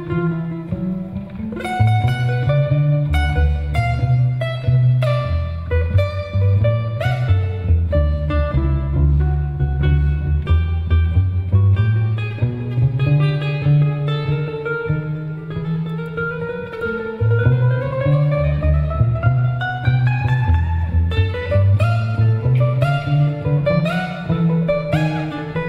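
Live jazz instrumental break on ukulele with a plucked cello bass line underneath, with no singing. About two-thirds of the way through, a line slides steadily upward in pitch over several seconds.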